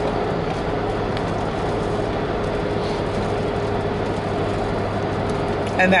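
Steady road and engine noise heard inside a moving car's cabin, with a constant low hum.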